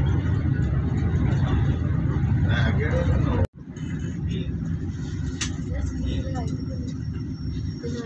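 Car driving, with a steady low rumble of engine and road noise heard from inside the car. It cuts off abruptly about halfway through, then comes back quieter.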